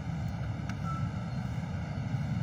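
Steady low rumble of wind buffeting a phone's microphone outdoors, with no distinct events.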